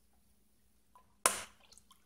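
Mostly near silence, broken about a second in by one short splash of water poured from a plastic bottle into a foil-lined bowl, fading out quickly.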